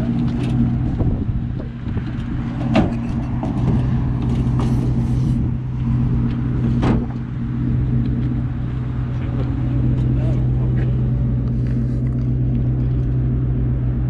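Pickup truck engine idling steadily, with wooden knocks as pallets are pushed into the truck bed, one about three seconds in and another about halfway through.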